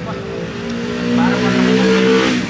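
A motor vehicle's engine, louder and rising slightly in pitch toward the end, with a short spoken word over it.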